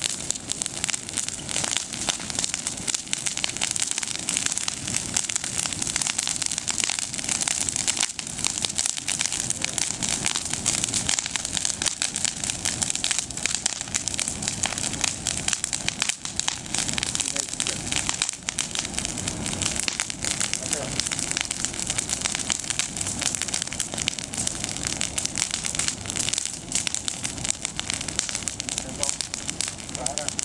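Bonfire of freshly pruned olive branches burning in tall flames, the leafy twigs crackling densely and continuously.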